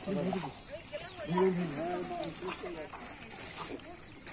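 People talking, several short stretches of speech, with a few faint high chirps and light clicks behind them.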